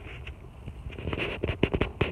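Tomato leaves and stems rustling and crackling against a handheld phone as it is pushed in among the plant, with a cluster of sharp crackles in the second half.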